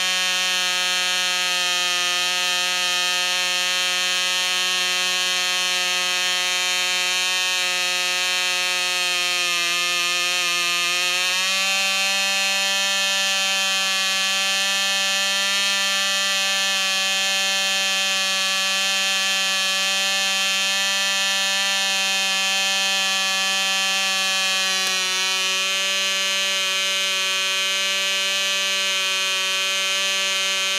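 Cox .049 two-stroke glow engine running with its propeller spinning, a loud, steady, high-pitched buzz. The pitch sags slightly about a third of the way in, then picks up to a little higher and holds.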